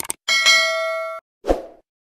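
Subscribe-animation sound effects: two quick mouse clicks, then a bell ding that rings for about a second and cuts off suddenly, then a short thud about one and a half seconds in.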